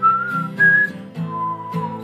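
A man whistling a short melody, a few quick notes and then a lower held note, over strummed acoustic guitar chords.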